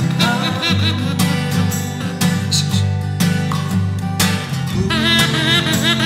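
Acoustic guitar strumming with a small wooden whistle played over it. The whistle's notes warble and slide up and down high above the guitar.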